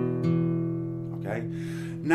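Acoustic guitar sounding a three-string E blues bass shape (open low E with the fifth and fourth strings fretted at the second fret), struck again just after the start and left to ring and slowly fade.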